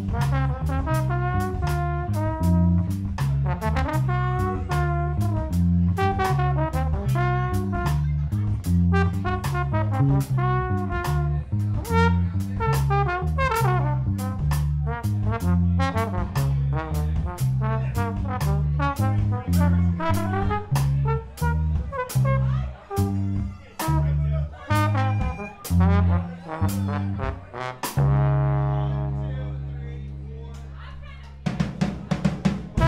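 Live instrumental jazz-rock trio: trombone played through effects pedals carries the melody over an electric bass line and a drum kit keeping a steady beat. About two seconds before the end the drums stop, and a held low note fades away.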